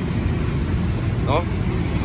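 A motorcycle engine idling steadily, a low even running sound.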